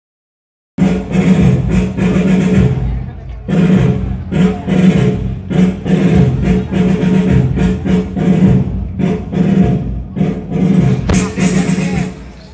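Loud music with singing, starting just under a second in and stopping abruptly near the end.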